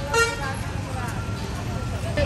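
A vehicle horn sounds a short toot just after the start, over steady street traffic noise of motorbikes and cars passing close by.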